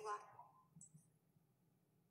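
A woman's voice trailing off in the first half second, then near silence with a couple of faint clicks about a second in.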